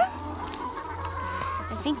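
A flock of rescued laying hens clucking, many short calls overlapping one another.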